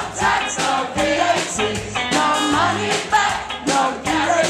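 Upbeat dance music with a steady beat and a singing voice, the word 'push' sung near the start.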